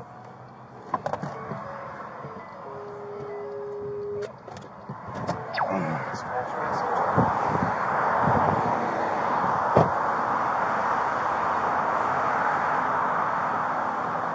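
A patrol car door opening, with a few clicks and a short steady electronic tone. Then steady road traffic noise, picked up on a body-worn camera outside beside a multi-lane highway, growing louder about halfway through.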